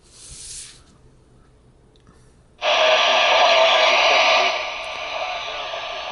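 Icom IC-A20 airband transceiver's speaker: about two and a half seconds in, the squelch opens with a sudden loud rush of static. About two seconds later the static drops to a lower level and keeps on. A brief rustle of paper pages at the start.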